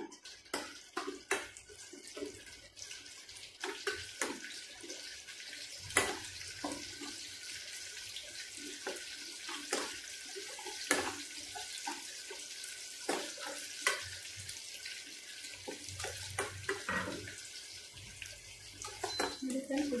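Curry leaves sizzling and crackling as they fry in hot oil in a stainless steel kadai: a steady hiss broken by many sharp pops. A steel spoon stirs and clinks against the pan now and then.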